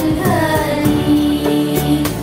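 Children's choir singing together, with a long held note in the middle of the phrase.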